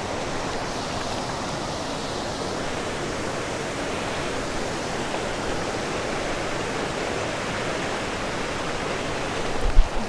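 Steady rush of water pouring over a dam spillway and running fast over rocks, with a short knock near the end.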